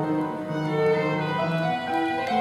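Violin and upright piano playing together: the violin plays a melody of held bowed notes over sustained piano notes.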